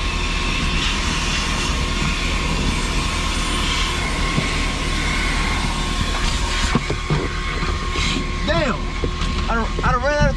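Coin-operated car-wash vacuum running steadily, its hose sucking inside the car: a constant rushing hiss over a low hum with a steady whine. A few short knocks come in the last few seconds.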